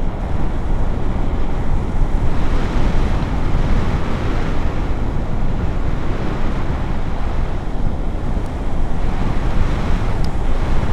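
Steady, loud rush of wind buffeting the camera microphone on a paraglider in flight, swelling and easing slightly in gusts.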